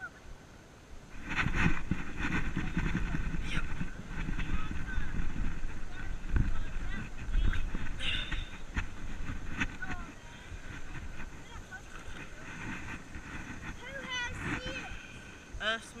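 Low wind and handling rumble on a body-worn action camera's microphone. It starts suddenly about a second in with knocks and scuffs and eases off after about ten seconds. Short bursts of voices come through it.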